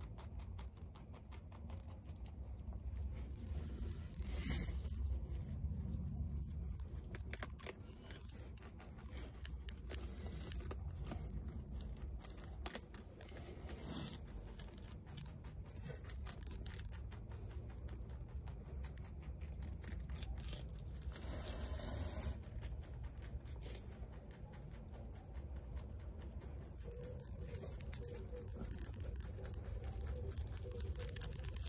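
Rabbit chewing a leaf and its stem: a quick, continuous run of small crisp crunches, with a few louder rustles of the leaf, over a low steady rumble.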